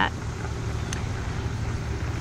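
Steady road traffic noise from a four-lane highway: a low rumble with a haze of tyre noise over it.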